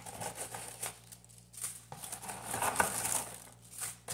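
Packaging being handled: irregular crinkling and rustling of wrapping, with small clicks and knocks.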